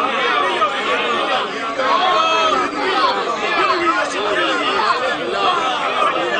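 Many people's voices talking over one another at once, a steady crowd chatter.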